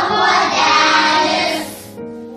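A group of children singing together, the song dropping away about one and a half seconds in.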